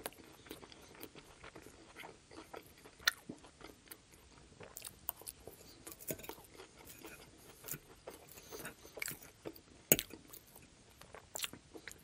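Close-miked chewing of a chicken salad with crisp lettuce: soft, irregular crunches and wet mouth clicks, with a couple of sharper clicks about three seconds in and near ten seconds.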